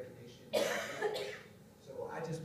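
A person coughing twice, the first cough sudden and loud about half a second in, the second shorter one just after.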